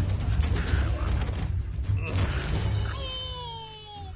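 Dramatic film score with heavy low drumming under fight sound effects, then, about three seconds in, a dinosaur's high whining cry that glides downward for about a second.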